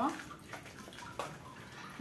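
Hands working and pressing loose potting soil around the base of a potted Monstera, a soft rustling with one light tap about a second in.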